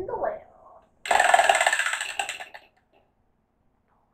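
Pegged prize wheel spinning, its rim pegs clicking rapidly against the pointer. The clicks slow and stop about two and a half seconds in as the wheel comes to rest.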